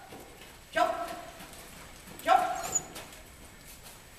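A dog barking: two sharp barks about a second and a half apart.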